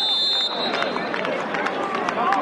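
Referee's whistle blown in one held blast of about a second, signalling the free kick to be taken, over the voices of the stadium crowd.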